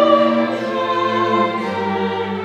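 Countertenor singing with a baroque chamber orchestra of bowed strings and harpsichord; a high held vocal note fades early on while the strings sustain chords beneath.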